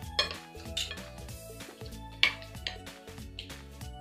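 A metal spoon and fork clinking and scraping on a ceramic plate as food is tossed, with a few sharp clinks, the loudest about two seconds in. Soft background music plays under it.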